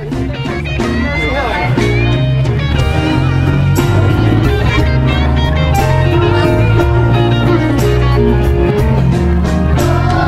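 Recorded backing track starting up: guitar over a steady bass line and beat, the instrumental introduction of a song, building in loudness over the first second or two.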